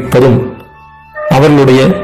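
A man speaking in Tamil over soft background music. Midway through he pauses briefly, and only the music's quiet held tones are heard.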